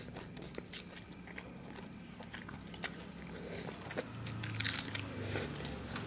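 Close-up chewing and slurping of rice and water spinach eaten by hand, with irregular wet mouth clicks and a louder, crunchier burst of chewing about four and a half seconds in.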